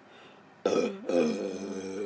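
A woman burping between gulps of carbonated soda: a loud burp begins about two-thirds of a second in, breaks briefly, then carries on at a steady pitch.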